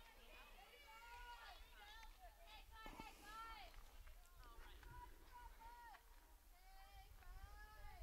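Faint, distant high-pitched voices calling out in short rising-and-falling shouts, over a low steady rumble: softball players' chatter from the field and dugout between pitches.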